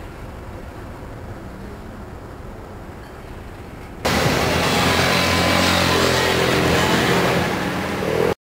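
Faint, steady outdoor harbour ambience with a low rumble, then, from a sudden edit about halfway through, much louder street noise with a motorcycle engine running as it passes along the seafront road.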